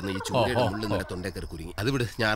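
A man talking animatedly, his voice rising and falling quickly in pitch.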